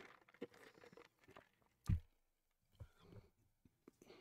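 Faint gym handling noise: a few light clicks and knocks and one dull thump about two seconds in, as weight plates and equipment are handled between sets.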